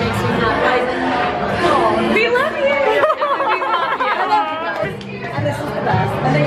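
Several women's voices chatting and exclaiming over one another, with music playing in the background.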